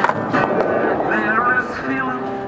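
Stratocaster-style electric guitar played through an amplifier. A chord is struck at the start, then comes a rough, noisy stretch with no clear notes, and wavering high notes about a second in.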